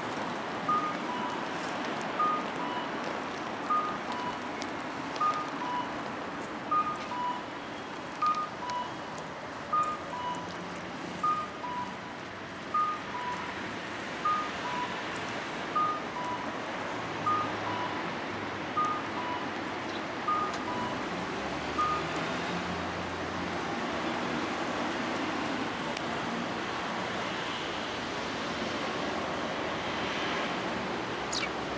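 A two-tone electronic warning beep, a higher note then a lower one, repeating about every second and a half over steady background noise, and stopping about two-thirds of the way through.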